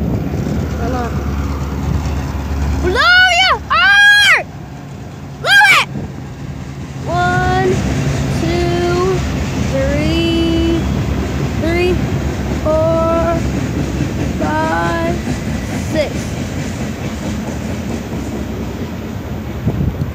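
Steady low rumble of a passing Norfolk Southern diesel train. A child's loud excited shouts break in twice, a few seconds in.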